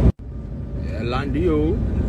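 A loud low rumble cuts off sharply at the very start, then a quieter steady low rumble like a vehicle's, with a short voice sliding up and down in pitch about a second in.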